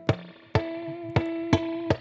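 Tap harmonics on a PRS electric guitar through a clean amp: about five sharp right-hand taps an octave above the fretted note, each ringing out a harmonic that sustains until the next tap.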